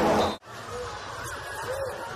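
Loud basketball arena noise that cuts off abruptly less than half a second in, followed by quieter gym ambience with a few short squeaks, typical of basketball shoes on a hardwood court.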